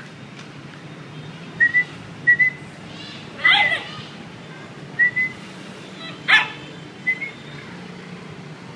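Alaskan Malamute puppy giving short high whimpers in quick pairs, four times, with a louder yelp about three and a half seconds in. A sharp click comes near the end.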